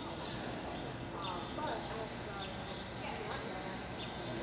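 A horse walking on the soft dirt footing of an indoor show arena, with murmuring voices in the background.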